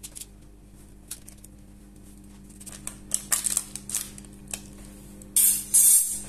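Metal slotted spatula scraping and clicking against baking paper as rounds of sponge cake are pried up and lifted out: a string of light clicks and scrapes, with two louder scrapes near the end.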